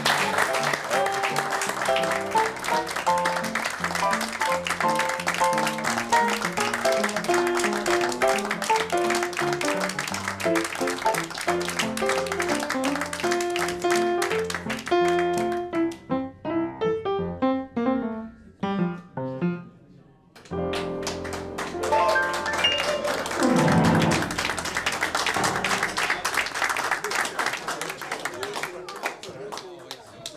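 Upright piano played live, a lively tune, with audience applause over the first half. The playing thins out, stops briefly about twenty seconds in, then starts again.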